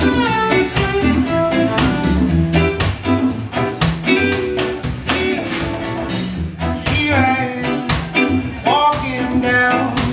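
A live band playing a reggae groove: a bowed viola carries the melody over electric guitar, bass guitar and a steady drum-and-percussion beat.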